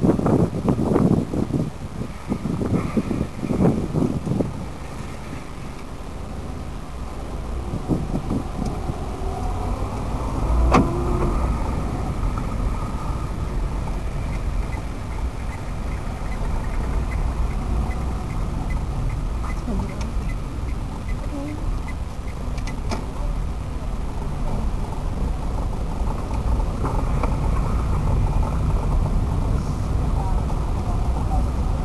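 Car engine running with a steady low rumble as the car drives, heard from inside the cabin. A light, regular ticking goes on for several seconds in the middle, and there are a few louder knocks and handling noises in the first seconds.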